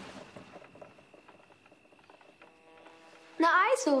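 Quiet film soundtrack: a faint background hush, with a soft sustained music chord coming in about halfway through and a voice speaking near the end.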